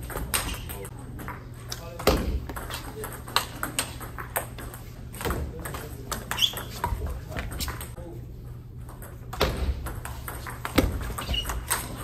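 Table tennis ball being hit back and forth in rallies: a run of sharp, irregular clicks of the celluloid ball on rubber paddles and the table, with voices in the background.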